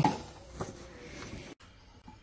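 Quiet room tone with a single faint click about half a second in; the sound drops out for an instant near the middle at an edit cut.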